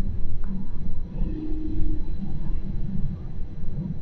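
Gornergrat Railway electric rack train running, a low uneven rumble heard from inside the carriage.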